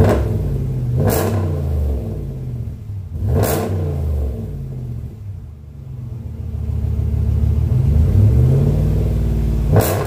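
2019 Ram 1500's 5.7-litre Hemi V8 with its muffler cut out, blipped sharply about a second in and again a few seconds later, dropping back to idle between, then revved up more slowly to a peak near the end.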